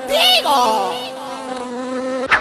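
A steady, fly-like buzzing drone with a brief wavering sound in its first half-second, closing out a hip-hop track.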